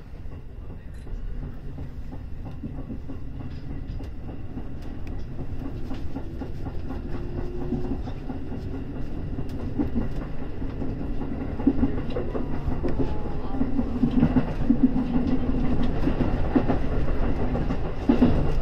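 Electric train gathering speed, heard from on board: a motor hum that grows steadily louder, with wheels clicking over rail joints and the station points, the clicks coming thicker toward the end.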